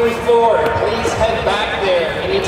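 Indistinct voices echoing in a large sports hall, with a few short thuds.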